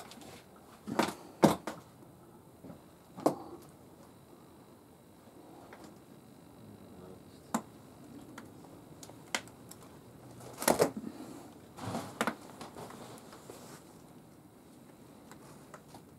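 Scattered clicks, knocks and scuffs of a person moving about and handling things in a small room, with the loudest cluster about eleven seconds in.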